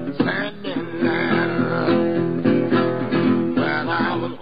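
Country-blues playing on a steel-bodied resonator guitar, an instrumental passage between sung lines, with plucked notes ringing and overlapping.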